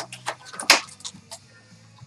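A cardboard trading-card box being handled and its lid flap opened: a few light taps and clicks, with one loud sharp snap under a second in.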